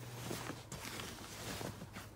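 Faint rustling of a denim vest as it is flipped over by hand.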